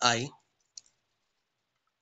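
A man's voice ends a word at the start, then a single short click, a pen tapping on paper, about a second in; after that near silence.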